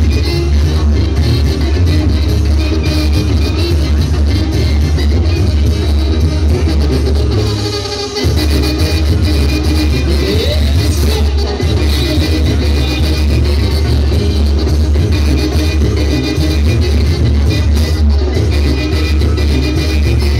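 A Mexican banda plays live and loud, with sousaphone bass, clarinets, drum kit and congas. The music eases off briefly about eight seconds in, then goes on.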